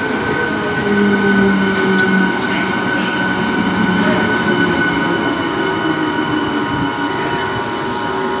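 Eastern Railway EMU local train coaches running past close by as the train slows into the station: a steady loud rumble of wheels on rail, with a steady high-pitched squeal and a low motor hum that slowly falls in pitch as it decelerates.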